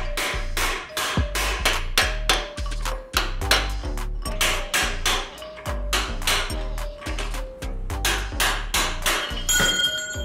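Hammer blows on a chisel driving a notched steel pin bush out of a mini excavator's dipper arm, over background music with a steady beat.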